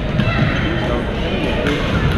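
Gym-hall din of several badminton games at once: a constant babble of voices across the hall, broken by a few sharp racket strikes on shuttlecocks, two of them close together near the end.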